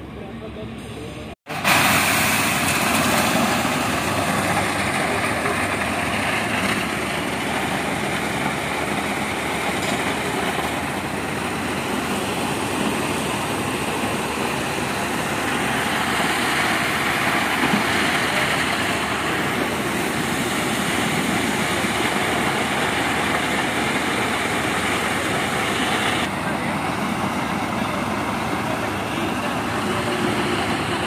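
Concrete mixer truck running steadily at a pour, a loud, even machine noise that cuts in after a brief dropout about a second and a half in.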